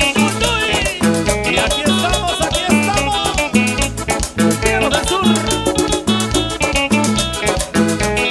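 Live cumbia band playing with a steady dance beat: accordion over electric bass guitar, congas and drum kit.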